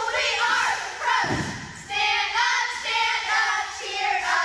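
Cheerleading squad singing a cheer together in unison, with a single thump about a second in.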